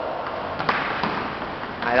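A table tennis ball being hit in a rally: one sharp tap about two-thirds of a second in, with a few fainter taps around it.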